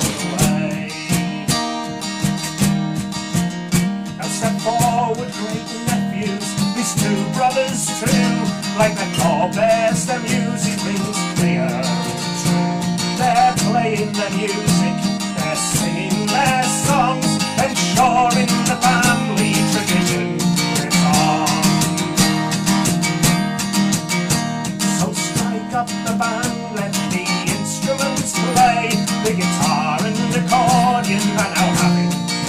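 Live acoustic music: a strummed and picked string instrument, most likely an acoustic guitar, playing an instrumental passage with a melody line over steady chords and no singing.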